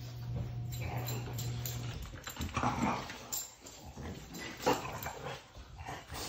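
French bulldog vocalizing in a series of short calls at a cat, with the loudest calls a few seconds in. A low steady hum stops about two seconds in.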